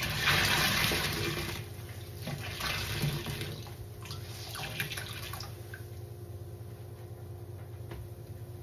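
Soapy foam sponges squeezed by hand in a sink of sudsy rinse water: water gushes and splashes out of them with a wet squelch. Two big squeezes come in the first three seconds and smaller ones around four to five seconds, then it goes quieter.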